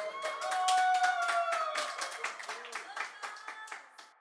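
A small audience clapping irregularly after the song, thinning out toward the end, with a held, slightly falling pitched sound behind the claps in the first half.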